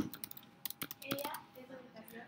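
Typing on a computer keyboard: a quick, irregular run of key clicks, about a dozen keystrokes as a word is typed.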